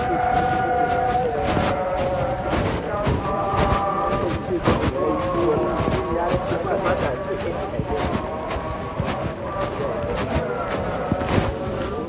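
Voices chanting in long held notes that step from pitch to pitch, with scattered knocks and bumps throughout.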